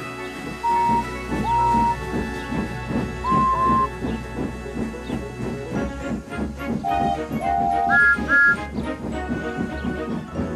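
Steam locomotives chuffing in a steady rhythm and sounding a string of short whistle toots at several pitches, the last two higher, over background music.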